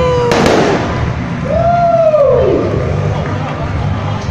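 Fireworks bursting overhead: a sharp bang about a third of a second in, followed by crackling, over the murmur of a crowd. A long held tone fades out just after the bang, and near the middle a second tone rises and then falls.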